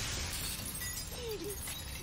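Film soundtrack: the tail of a ceiling light fixture shattering in a shower of sparks, a hiss of falling glass and sparks that slowly fades.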